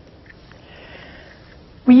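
Quiet room tone with a soft in-breath from the speaker from about half a second to a second and a half in. Speech resumes at the very end.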